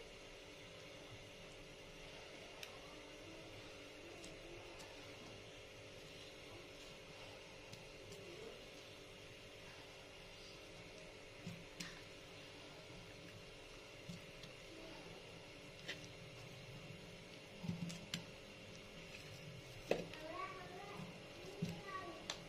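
Faint steady hum with several even tones, like a running household appliance, with a few light knocks in the second half and faint voices near the end.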